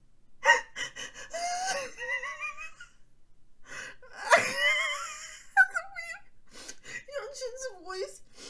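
A woman's sharp gasps, about half a second and about four seconds in, each running into high, wavering wordless cries. These are emotional squeals that sit between laughing and mock crying.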